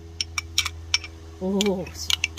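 Metal spoon clicking and scraping against a glass jar while thick fermented fish paste is scooped out of it, in a string of irregular sharp clicks. A short vocal sound is heard near the end.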